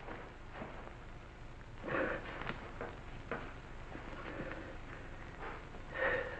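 Faint rustling and scraping of tough spacesuit fabric being handled and worked with a knife that will not cut it, with a slightly louder patch about two seconds in and a few light clicks; old film soundtrack hiss underneath.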